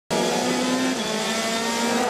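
Onboard sound of a Citroën C-Elysée WTCC touring car's turbocharged 1.6-litre four-cylinder engine at speed: a steady engine note that drops slightly in pitch about a second in.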